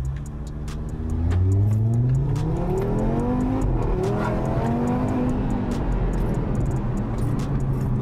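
Audi car engine accelerating hard in sport mode, heard from inside the cabin: the revs climb steadily from about a second in, then level off to a steadier, wavering drone for the last few seconds.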